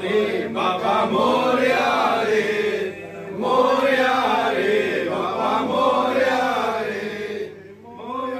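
Men's voices chanting together in praise of Ganesh, in long pitched phrases with a short break about three seconds in.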